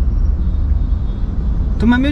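Steady low rumble of a car on the move, heard from inside the cabin, with a man's voice starting near the end.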